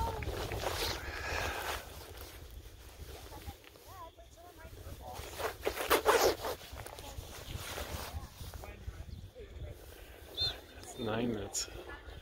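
Distant shouting voices across an open soccer field, with wind rumbling on the microphone. A loud, brief rustle close to the microphone about six seconds in, and a nearby voice near the end.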